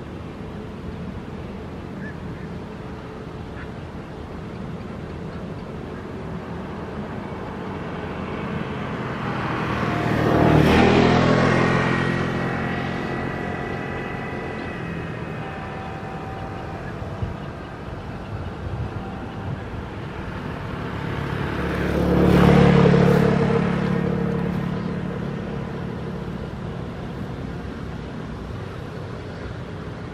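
Two motor vehicles driving past, one about ten seconds in and another about twenty-two seconds in, each engine rising as it nears and fading away, over a steady low background hum.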